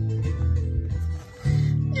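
Recorded bass guitar line playing back, shaped by a phone's graphic EQ, with deep low notes; it breaks off briefly just past a second in and then resumes.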